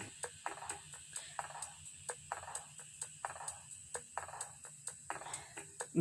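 Groceries being shifted around in a shopping cart: faint, irregular knocks and rustles of packaging, several a second, over a steady low background hum.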